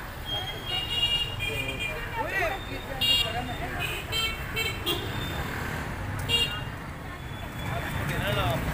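Vehicle horns toot several times in short blasts in busy street traffic, over a steady traffic rumble and background voices.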